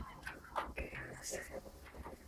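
A voice muttering quietly under the breath, with a few faint knocks and rustles of hands at work.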